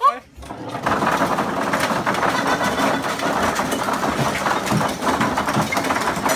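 Hundreds of ping-pong balls spilling out of an overhead office cabinet and bouncing on the desk and floor: a dense, rapid clatter of light clicks that starts about a second in and keeps on.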